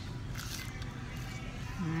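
Restaurant room tone: a steady low hum with faint background music, and a brief soft rustle about half a second in.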